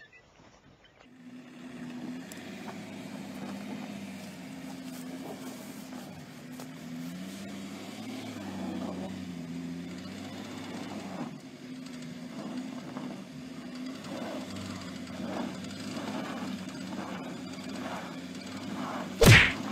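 BMW X5 SUV engine running under load in snow, starting about a second in. The revs rise and fall unevenly while the vehicle barely moves.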